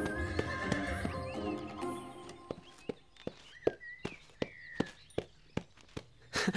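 Horse's hooves clopping at a steady pace, about two to three hoofbeats a second, clearest in the second half, under background music that fades out after the first couple of seconds.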